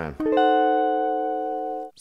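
Semi-hollow-body electric guitar: one diminished chord containing a C is struck once and left to ring steadily, then cut off suddenly just before the end.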